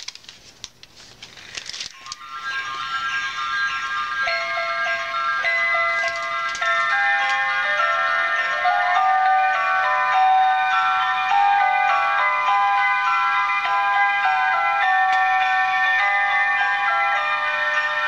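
Battery-powered light-up reindeer scene toys, three linked domes, started with a button press: a few handling clicks, then about two seconds in the toys' sound chip starts a simple electronic melody, thin with no bass, that plays on steadily.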